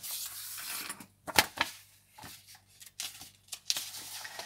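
Handling sounds of a paper booklet being picked up and its pages turned: a rustle, then a few light clicks and knocks on the table, the sharpest a little over a second in.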